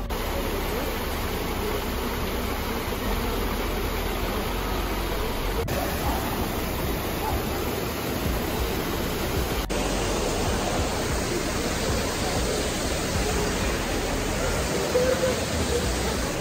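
Trevi Fountain's cascades pouring into its basin: a steady rush of splashing water.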